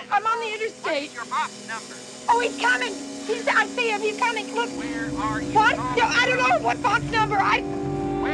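A woman's voice speaking urgently into a phone, with a low sustained note of suspense music entering a little after two seconds and a deeper rumbling drone swelling in about halfway through.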